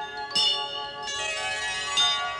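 Bells ringing as part of background music: one struck about a third of a second in, its many overtones ringing on and fading, and another struck right at the end.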